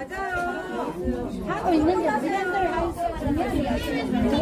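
Speech only: people talking, with voices overlapping one another.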